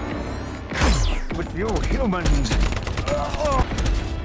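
Film sound effects of sci-fi robot weapons firing: a heavy energy-weapon blast with a falling sweep about a second in, then rapid gunfire crackling on through the rest, mixed with warbling mechanical whines.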